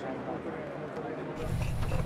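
Men talking over the chatter of a crowd. About one and a half seconds in, this cuts to a steady low rumble with a man's voice beginning over it.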